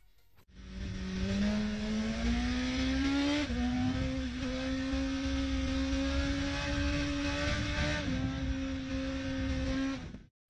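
BMW S1000RR's inline-four engine pulling hard at speed: its note rises steadily, dips sharply at a gear change a few seconds in, then holds a steady high pitch until it cuts off at the end.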